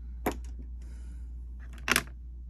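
Lipstick tubes and plastic cosmetic cases being handled and set down: one short click about a quarter second in, then a louder clatter of two quick knocks near the end.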